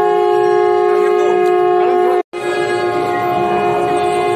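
A loud, steady held note with many overtones from a horn or reed wind instrument. It cuts out briefly a little after two seconds in, then carries on at the same pitch, over faint crowd sound.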